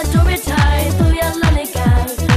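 A Burmese Thingyan water-festival song: upbeat electronic dance-pop with a quick, punchy kick-drum beat and a melodic lead over it.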